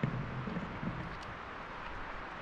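Steady outdoor background noise with no distinct events, and a faint low hum in the first second.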